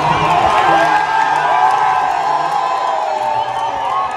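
Stadium crowd cheering and shouting during a track race, many voices held in long, loud cries over one another.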